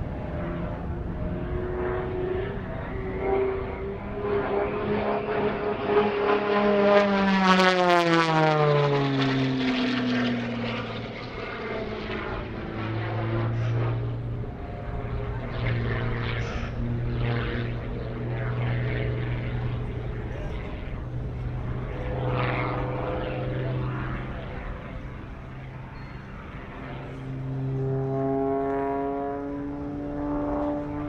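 MXS-RH single-engine propeller aerobatic plane flying its routine: the engine and propeller drone swells to a loud pass about seven seconds in, the pitch falling steeply as it goes by. After that comes a steadier, lower drone that shifts in pitch with the manoeuvres and climbs again near the end.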